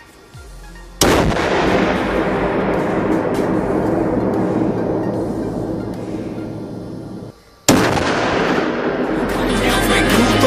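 A sudden loud explosive blast about a second in, followed by a long rumble that dies away slowly over several seconds. A second sudden blast follows near the end. These fit an explosive charge set off in a blast test of an armoured car.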